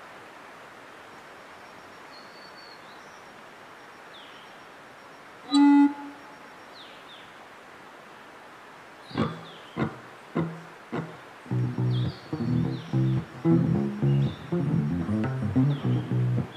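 Faint woodland background with a few short bird chirps. About a third of the way in a single plucked note rings out, then a few scattered plucks follow, and for the last third an acoustic stringed instrument is picked in a steady rhythm.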